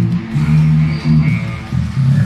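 Live band playing loud, with electric guitar and a heavy bass line.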